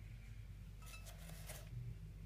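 A few faint rustles and clicks about a second in, over a low steady hum: small handling sounds near burning tissue paper in a metal container.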